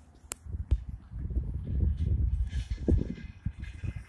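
Footsteps on a dry dirt trail and handheld-camera handling noise: irregular low rumbling and scuffing with a few sharp clicks, one just after the start.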